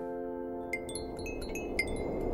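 Wind chime of small hanging metal bells tinkling: a quick run of bright, briefly ringing strikes starting a bit under a second in.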